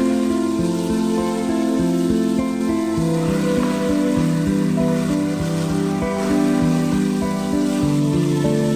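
Instrumental background music over the sizzle of chicken pieces frying in an open pot as they are stirred with a spatula; the oil has separated from the gravy and the chicken is nearly cooked.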